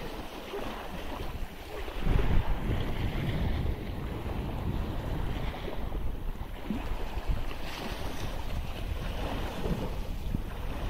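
Wind buffeting the microphone, growing heavier about two seconds in, over small sea waves washing against shoreline rocks.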